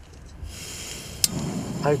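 Gas hissing from a screw-on camping stove burner on a Coleman gas canister as the valve is opened. About a second in comes one sharp click of the stove's built-in piezo sparker, and the burner catches and burns with a steady rush of flame.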